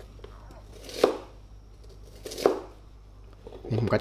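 A kitchen knife chopping an onion into bite-sized pieces on a plastic cutting board: two sharp chops about a second and a half apart.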